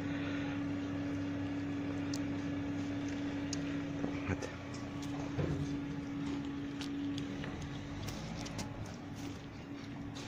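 A steady low motor hum at one pitch, fading out about eight seconds in, with a few faint small clicks.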